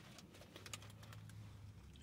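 Near silence, with a few faint light ticks and a faint low hum.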